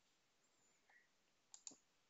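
Near silence, with two faint, quick computer-mouse clicks a little past the middle.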